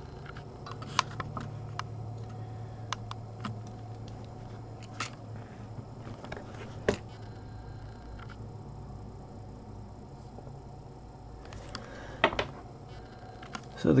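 A steady low hum from a linear power supply's transformer, which is still switched on, with scattered small clicks and taps of handling.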